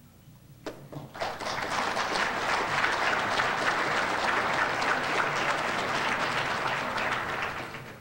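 Audience applauding: a few first claps just under a second in, swelling quickly to full applause that fades out near the end.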